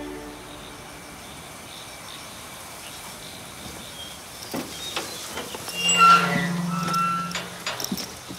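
Black metal mesh gate being unlatched and swung open: a couple of sharp latch clicks, then a steady hinge creak lasting about a second and a half, and a few more metallic clicks near the end as it stops.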